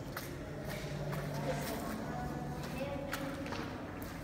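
A few faint footsteps on a stone floor, with faint voices in the background.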